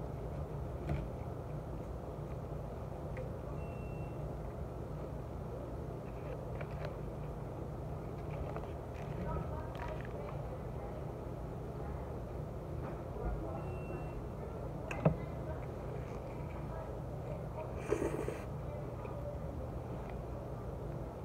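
A person eating French fries by hand and chewing, over a steady low hum, with a few soft clicks, a sharp click about three-quarters of the way through and a short rustle near the end.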